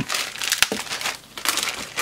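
Clear plastic bag crinkling and rustling in irregular crackles as hands pull it open.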